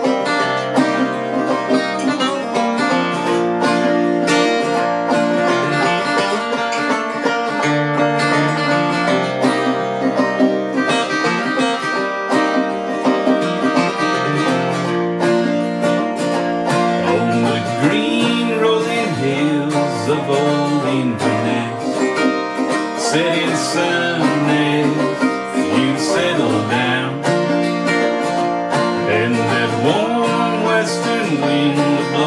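A handmade acoustic guitar and a banjo playing an instrumental passage together in a folk/bluegrass style, a steady plucked and strummed accompaniment.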